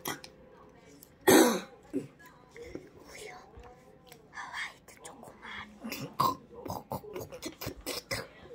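Children's voices, low and whispered, with one loud short vocal sound falling in pitch about a second in.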